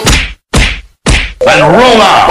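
Three loud sudden hits in a dance remix, about half a second apart, each cut short by silence, followed about one and a half seconds in by a voice sample with a wavering pitch.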